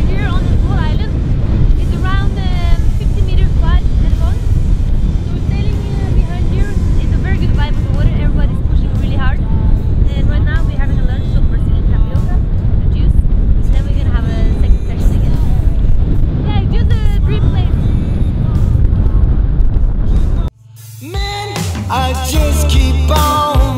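A woman talking over heavy wind rumble buffeting the microphone; the wind noise cuts off abruptly near the end.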